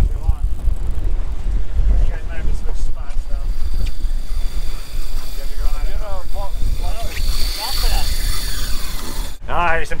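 Wind buffeting the microphone on an open boat at sea, a strong steady low rumble, with faint voices calling out now and then. It cuts off abruptly near the end.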